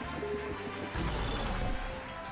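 Online slot game's music and sound effects as the reels spin and land, getting louder about a second in.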